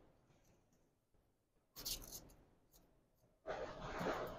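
Faint scratchy rubbing in two short bursts, about two seconds in and near the end: sandpaper scraping a spark plug's electrodes clean.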